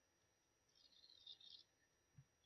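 Near silence: room tone, with a faint high-pitched patter about a second in.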